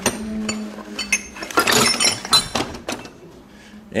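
Metal hand tools clinking and rattling against each other in a steel tool chest drawer as they are shifted by hand, with a cluster of clinks around the middle.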